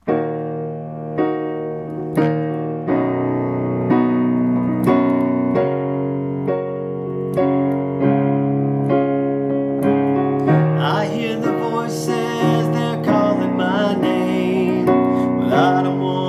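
Piano-voiced keyboard playing the slow introduction to a song, chords struck roughly once a second and left to ring. About ten seconds in, a wavering melody line joins over the chords.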